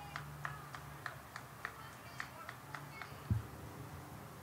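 Faint open-air ballpark ambience: a run of short high chirps, about three or four a second, over a low hum, with one dull thump a little over three seconds in.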